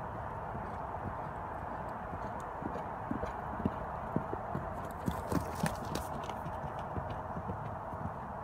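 Horse's hoofbeats on arena dirt, a run of separate footfalls that grow louder as the horse passes close and are loudest about five seconds in, over a steady background hiss.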